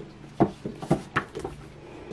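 A few short knocks and rubs as a paperback book is slid off a wooden bookshelf and handled.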